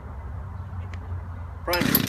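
A gas chainsaw's starter cord is pulled but the engine does not catch, because it is flooded. A low steady rumble runs underneath, and a man's voice comes in near the end.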